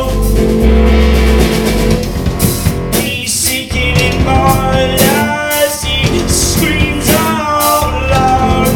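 Live rock band playing loudly: electric guitar over two drum kits, with a heavy low note in the first second or so.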